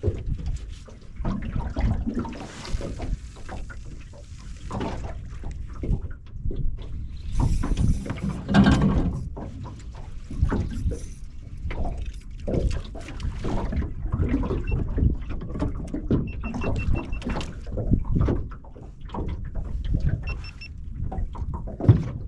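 Water lapping and slapping against a small boat's hull, with rough wind noise, rising to a louder rush about nine seconds in.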